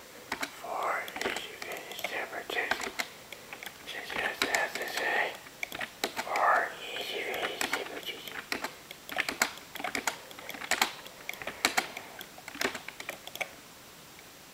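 Computer keyboard typing: quick, irregular key clicks, thicker in the second half, with a low, faint voice talking in the first half.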